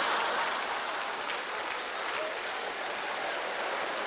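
Large theatre audience applauding and laughing. The applause is loudest at the start and slowly dies away.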